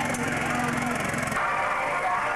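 An engine runs steadily with a low, even pulse under crowd voices, then gives way abruptly to music about a second and a half in.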